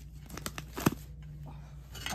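Plastic-sleeved sticker packets being handled, with light crinkling and a few clicks, the sharpest just under a second in, over a faint steady hum.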